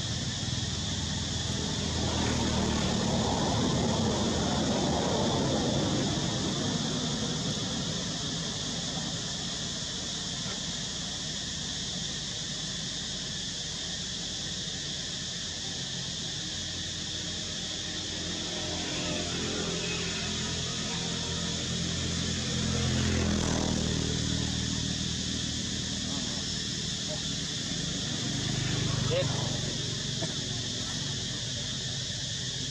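Outdoor ambience: indistinct voices in the background, louder a couple of seconds in and again around two-thirds of the way through, over a steady high-pitched drone and a low rumble.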